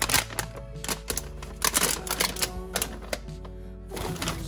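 Plastic food packets crinkling and rustling as they are handled and set into a clear plastic refrigerator drawer, in clusters of crackles near the start and again around the middle. Background music plays throughout.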